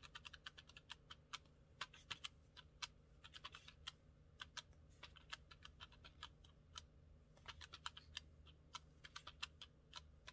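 Plastic keys of a desktop calculator being pressed in quick, irregular runs of faint clicks, several a second, with short pauses between runs as numbers are entered.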